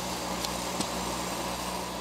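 Steady low mechanical hum of a refrigerated lorry's running machinery, heard from inside the frozen trailer, with a couple of faint taps from cardboard cartons being handled in the first second.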